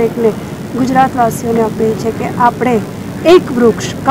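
Speech only: a woman speaking.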